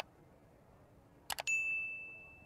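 Subscribe-button animation sound effect: a quick double mouse click at the start and another about a second and a half in, then a single high notification-bell ding, the loudest sound, ringing on and fading away.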